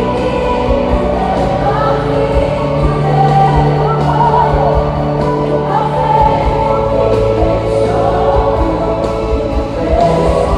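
Live worship band music played loud in an arena: a lead vocalist with many voices singing together over long-held bass notes and drums, recorded on a phone in the crowd.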